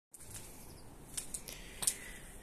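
Quiet background with a few short, sharp clicks in the second half, the last one the loudest.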